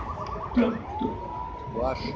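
A faint high tone that glides up about a second in and then holds steady, with brief snatches of speech over low background noise.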